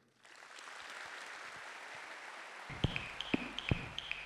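Audience applauding; about two-thirds of the way in, electronic music with a quick, regular drum beat comes in over the applause.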